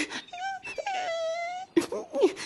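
High cartoon voice of a lost baby crab wailing in two notes, a short one and then one long held note, crying for its mother.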